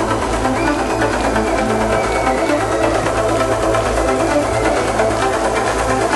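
Live synth-pop band music: layered synthesizers over a steady electronic bass line.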